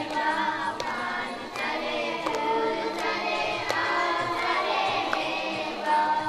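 Several voices singing together over music, with a sharp percussive strike keeping a beat about every three-quarters of a second.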